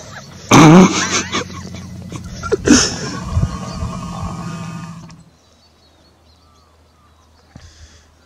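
Two loud, throaty roars about two seconds apart, the first the loudest, over a low steady hum; the sound drops away suddenly about five seconds in.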